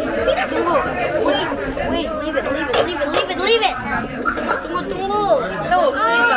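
Several children talking and chattering over one another, with no pause.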